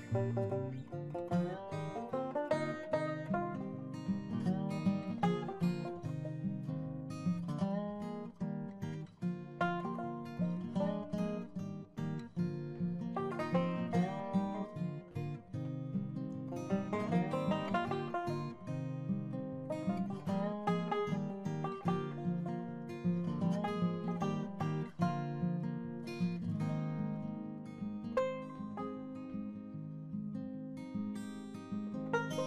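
Background music: acoustic guitar playing a continuous run of plucked notes.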